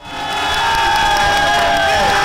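Arena crowd of basketball fans cheering and yelling. It swells in quickly over the first half second, with long held shouts riding over the noise.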